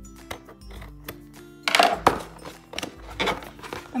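Scissors cutting through the packing tape on a cardboard toy box, a few short snips about halfway through and again near the end, over light background music.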